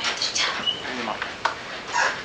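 Small-room noise while a question is awaited: faint voices, scattered clicks and rustles, and one brief high squeak about a third of the way in.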